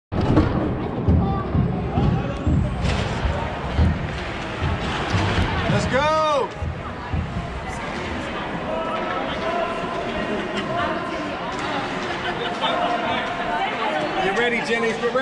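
Ice hockey rink sounds during a youth game: irregular knocks and thuds in the first half, a single high voice calling out, rising and falling, about six seconds in, then spectators' voices in the background.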